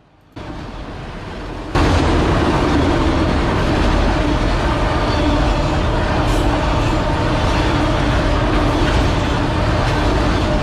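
BNSF freight train of autorack cars rolling past close by: a loud, steady rolling noise of steel wheels on rail. It comes up suddenly louder a little under two seconds in.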